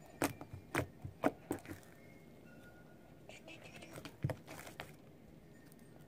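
Sticky slime being squeezed and stretched by hand, making a string of short wet clicks and pops, several in the first second and a half and more from about three to five seconds in.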